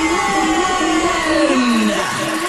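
Electronic radio-station jingle effect: a synthesized tone glides steadily downward over a steady high tone and a pulsing lower note.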